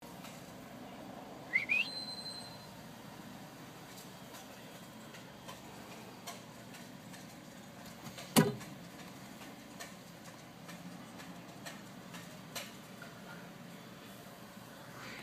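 Steady low rumble inside a moving car, with a short squeak rising in pitch into a brief whistle tone about two seconds in, and one sharp knock a little after eight seconds.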